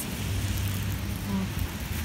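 Steady low outdoor background rumble with an even hiss over it. A brief voiced sound comes about one and a half seconds in.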